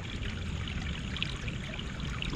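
Water running steadily through a pond's stream and small waterfalls.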